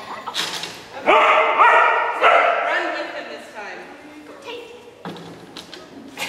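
A dog barking twice, loudly, about a second in and again a second later, each bark trailing off in the large hall.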